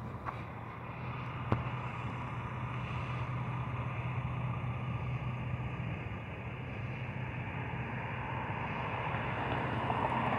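Steady street traffic noise with a low steady hum, and one sharp click about a second and a half in.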